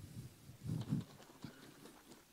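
A bottle of Newman's Own basil vinaigrette shaken by hand: the dressing sloshes in a faint, uneven run of soft knocks as the separated oil and vinegar are mixed.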